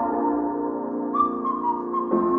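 Music played through a JBL PartyBox 310 party speaker, recorded in the room: the slow intro of a pop song, held synth chords with a higher melody note coming in about a second in.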